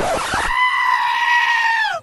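A loud, long scream-like cry, held steady at one high pitch for over a second and dropping away in pitch at the end, after a brief burst of noise at the start.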